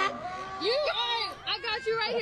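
Voices exclaiming without clear words, the pitch rising and falling in arcs.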